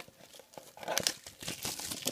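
Clear plastic shrink-wrap crinkling and tearing as it is pulled off a trading-card box, in irregular crackles that get denser partway through.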